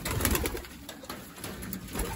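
Domestic pigeons cooing in a loft, with scuffing and rustling from handling early on.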